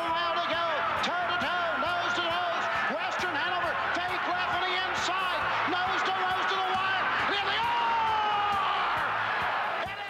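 A track announcer calling a harness race in a fast, continuous stream of commentary.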